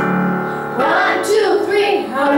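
Girls singing a pop song into microphones over a piano-and-keyboard backing track; a held chord opens, and the sung melody comes in just under a second in.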